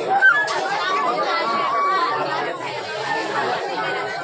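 Side-blown bamboo flute playing short held notes, heard through people chattering nearby.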